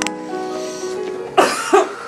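Slow background music with held notes, broken near the end by two loud coughs in quick succession.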